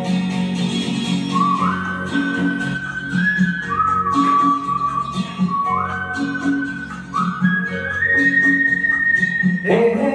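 Instrumental interlude of a golden-era Hindi film song karaoke backing track: a high, whistle-like melody of long held notes stepping up and down over a plucked, guitar-like accompaniment. A louder new phrase comes in just before the end.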